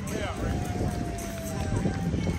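People's voices calling out over steady background rumble, with one long held note that sinks slightly in pitch.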